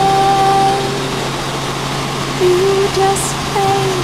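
Slow, sparse song intro: a woman's voice holding long sung notes that slide up or down between pitches, over a steady low drone.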